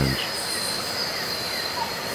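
Night-time rainforest insects: a steady high-pitched drone, with faint short chirps repeating under it.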